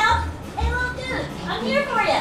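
Cartoon character voices from a projected animated show, making short exclamations that slide up and down in pitch, over quiet background music, with a low rumble in the first second.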